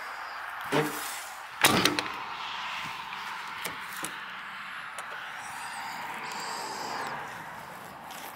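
A fire truck's metal body compartment door shutting with one loud clunk about two seconds in, followed by a few light clicks as a small hinged metal access hatch in the side panel is opened.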